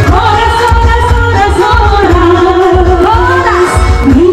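A woman singing a Batak song over a backing track with a strong bass beat, her voice holding long notes and sliding between them.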